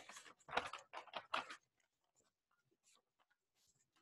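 A handful of short rustles from paper sheets being handled, in the first second and a half, followed by near silence.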